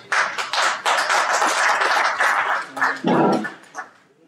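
Audience applause, a dense clatter of many hands that dies away just before the end, with a brief low-pitched sound about three seconds in.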